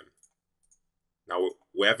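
Two faint computer mouse clicks in near silence, then a man starts speaking.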